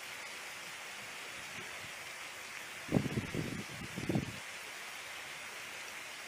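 Steady outdoor hiss with a short spell of low, irregular rumbling thumps about three to four and a half seconds in.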